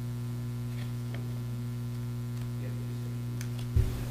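Steady electrical mains hum in the courtroom's microphone and recording system, with a single low thump near the end.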